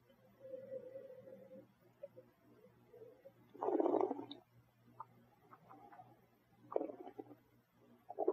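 Mouth sounds of wine tasting: a sip of red wine, then gurgling as it is drawn through with air and swished around the mouth. The loudest gurgle comes about halfway through and a shorter one near the end.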